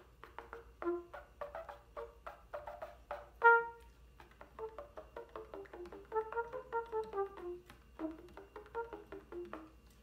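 Trumpet playing 'pop tones': a string of very soft, short tongued notes, each starting with a quick pop, with just enough articulation to excite the air and get the pitch. One note about three and a half seconds in is louder, and the second half runs down in falling sequences of notes.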